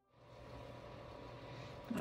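Steady low hum with an even hiss over it, a background machine or room noise that fades in at the start.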